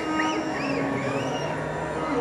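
A steady drone continues under four short, high notes that rise and fall, three of them in the first second. The pitch arches fit violin slides of the kind used in Carnatic playing.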